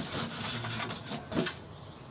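Rustling and rubbing as snack items are handled and picked out of a basket, a quick cluster of scrapes for about a second and a half, loudest near its end, picked up by a doorbell camera's microphone.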